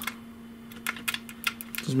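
A quick, irregular run of small sharp clicks from test leads, clips and bench gear being handled, over a faint steady hum.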